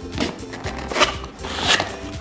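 A cardboard shipping box being torn open by hand, with a few short ripping sounds, the loudest near the end, over background music.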